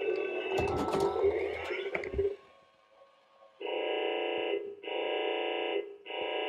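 Imaginext R/C Mobile Command Center toy playing its electronic sound effects from its speaker after a remote-control button press. A jumble of tones and clicks runs for about two seconds, then a short pause, then a buzzing electronic alert tone sounds twice, about a second each, as the Batwing launcher stands ready.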